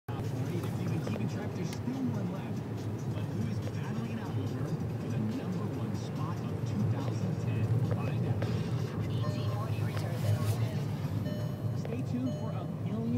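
Inside a moving car: a steady low rumble of the car driving, with the car radio playing indistinct talk and music over it.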